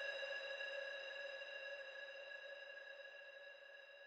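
A single held synthesizer note ending a vocal trance track, steady in pitch with no beat, fading out steadily.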